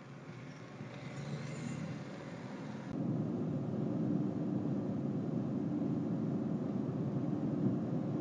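Road and engine noise heard inside a moving truck's cab, fairly quiet at first, then jumping suddenly about three seconds in to a louder, steady drone with a low hum.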